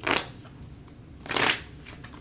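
Tarot deck being shuffled by hand: two short papery swishes of the cards, about a second and a half apart.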